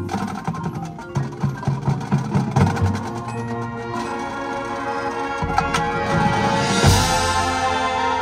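High school marching band playing: a quick rhythm of drum hits over the horns for about three seconds, then the band holds sustained chords that build to a cymbal crash near the end.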